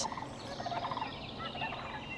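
Sandhill cranes calling faintly, several short calls.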